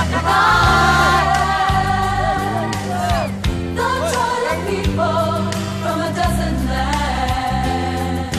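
A choir and solo singers performing a song with band accompaniment.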